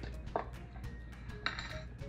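Light clinks and handling knocks of aluminium drink cans on a table, with a brief noisy rustle about one and a half seconds in, over faint background music.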